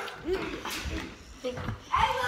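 Brief, muffled snatches of a child's voice, broken up by a few sharp knocks and low thumps, with the loudest knocks near the middle and end.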